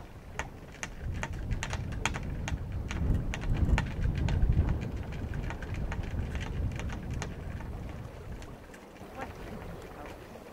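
Wind buffeting the microphone aboard a small sailboat under way, an uneven low rumble that swells about three to five seconds in, with many irregular light ticks and taps over it that thin out towards the end.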